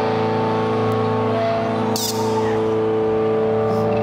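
A live band's amplified chord held as a steady drone of several sustained tones through the PA, with a short bright sweep about two seconds in.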